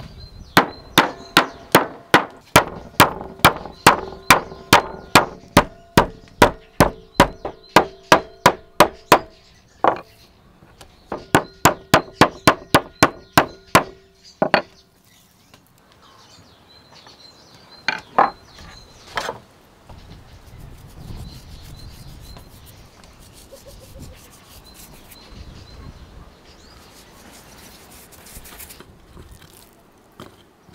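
Wooden meat mallet pounding slices of raw meat flat on a wooden cutting board, about three strikes a second with a woody ring, in two long runs. A few single knocks follow, then quieter rubbing of the meat as it is handled.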